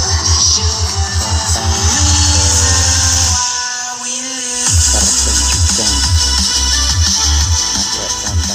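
Electronic dance music played loud through a homemade miniature sound system of subwoofer cabinets and two-way mid/tweeter boxes, with a heavy, rapidly pulsing bass. The bass drops out for about a second and a half midway, then comes back in.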